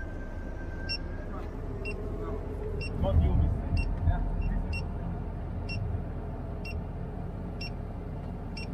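Mobile crane's engine and hydraulics running with a steady low rumble, heard from inside the cab. A steady high beep stops about a second in, and short regular ticks repeat through the rest.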